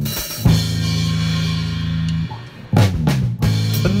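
Band music without vocals: a drum hit about half a second in opens a chord held for nearly two seconds, the sound drops away briefly, then a run of drum hits brings the band back in.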